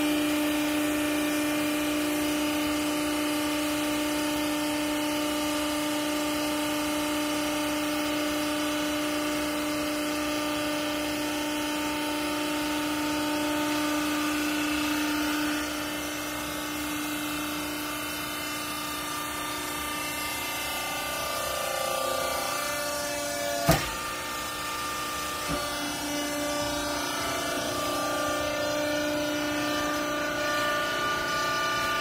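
Hydraulic power unit of a vertical clothing baler running with a steady hum while the press plate compresses the bale. The hum drops a little past halfway, and a single sharp knock comes about three quarters of the way through.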